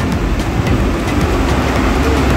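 Electric mixer-grinder running steadily, blending milk and Oreo biscuits into a shake.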